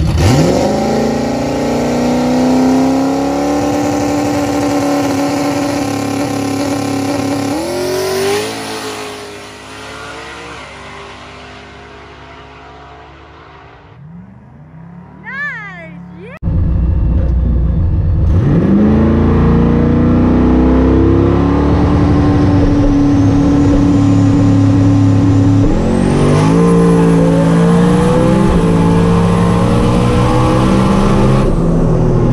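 Turbocharged 4.6-litre two-valve V8 of a New Edge Mustang GT launching on a drag pass: revs rise sharply off the line and hold high, the pitch jumps about eight seconds in, then the sound fades as the car runs away down the track. About halfway through it is abruptly loud again, heard from inside the car, the engine climbing in pitch at full throttle with another change in pitch near the end.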